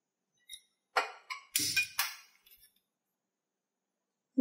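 Gas stove being lit: a quick run of about five sharp clicks and metallic clinks, bunched in the first two seconds.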